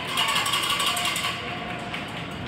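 A rapid rattle lasting about a second and a half, then dying away into the arena's background noise.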